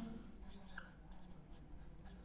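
Faint strokes of a marker pen writing on a whiteboard.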